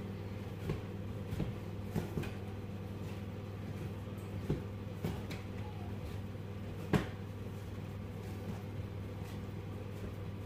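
Bread dough being kneaded by hand on a kitchen worktop, re-kneaded after knocking back: soft, irregular thumps as the dough is pushed and rolled against the counter, the sharpest about seven seconds in, over a steady low hum.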